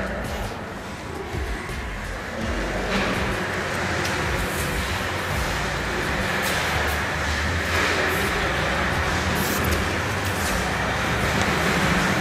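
A steady rushing noise, machine- or vehicle-like, that grows louder about three seconds in and then holds level, with scattered light clicks over it.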